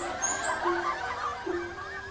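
Closing music: short, repeated notes in a light tune, fading out toward the end.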